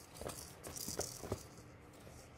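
Kittens scrambling in and out of a wicker basket: a rattling scratch of claws on the wicker, with a few sharp knocks, the loudest near the middle.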